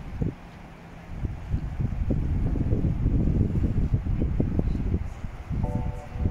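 Wind buffeting the microphone outdoors: an irregular, gusty low rumble that swells about a second in and eases near the end.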